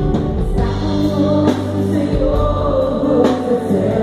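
Live Christian worship music: two women and a man singing together into microphones, held notes sung in a steady flow over a band with drums and guitar.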